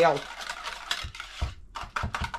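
Wire whisk beating a runny egg and yogurt batter in a bowl: a quick, irregular run of stirring strokes with light clicks of the whisk against the bowl.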